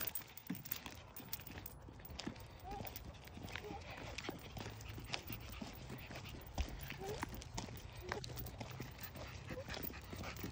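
Footsteps on an asphalt road: a toddler's rubber boots and a whippet's claws tapping as they walk, a run of short, irregular clicks.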